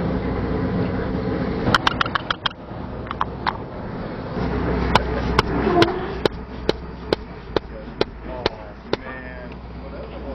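Mallet blows on a rammer, packing black powder rocket composition into a cardboard rocket tube. There are a few quick taps about two seconds in, then a steady run of about ten sharp blows at a little over two a second, over a low outdoor rumble.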